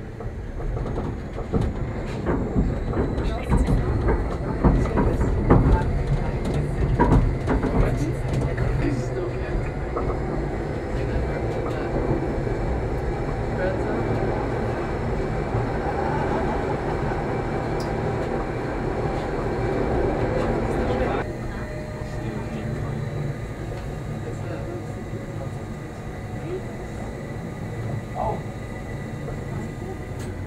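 Gornergratbahn electric rack railcar running downhill on its Abt rack line, heard from inside: steady rumble of wheels and rack drive, with clicks and clatter over the track in the first several seconds. The sound grows fuller and louder inside a roofed snow gallery and drops suddenly about two-thirds of the way through.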